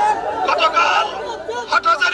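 A man's voice shouting through a handheld megaphone, with other voices chattering around it.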